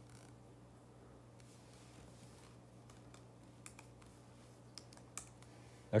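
Faint clicks of calculator keys being pressed: a few scattered taps, mostly in the second half, over a low steady hum.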